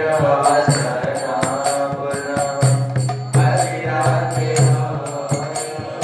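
A man singing a devotional chant in long, drawn-out notes, keeping time with small brass hand cymbals (kartals) struck in a steady rhythm, their high ringing carrying over the voice.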